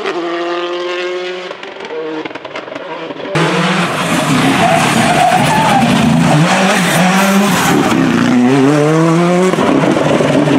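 Hyundai i20 R5 rally car's turbocharged four-cylinder engine at full stage pace: a steady engine note at first, then, after a sudden cut about three seconds in, much louder revving that rises and falls with the gear changes and climbs in steps near the end as it accelerates.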